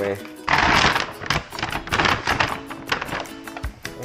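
Paper grocery bag crinkling and rustling as it is grabbed and pulled open, loudest about half a second in and again around two seconds, over background music.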